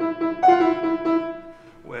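Piano being played: a sustained note sounds, another is struck about half a second in with quieter notes moving underneath, then the sound dies away before a voice starts speaking at the very end.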